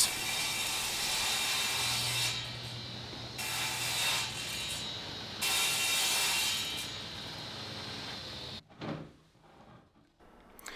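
Table saw ripping a 7/8-inch OSB panel, a steady cutting noise that swells and eases in stretches as the board is fed. The sound cuts off suddenly near the end.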